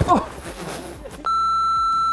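A steady electronic censor bleep: one flat, unwavering tone about a second long, starting a little past halfway and cutting off abruptly. It is dubbed over swearing.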